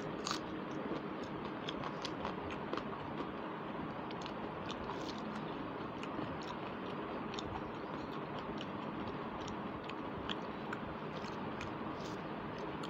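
Close-miked chewing and mouth sounds of a person eating rice and curry by hand, with many small wet clicks scattered throughout. Fingers mixing soft rice on a plate, over a steady background hiss.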